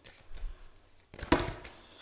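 A stack of tarot cards being handled: faint rustling and ticks, then one sharp tap a little past halfway as the stack is squared or set down.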